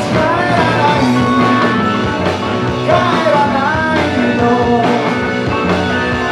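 Live rock band playing loudly: electric guitars, upright bass and drums, with a male singer's voice over them.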